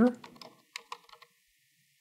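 A short run of soft keystrokes on a computer keyboard, typing a word, in the first half.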